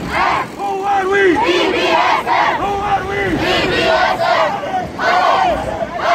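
A group of young men and women shouting a cheer chant together in drawn-out syllables, several of which fall in pitch at the end.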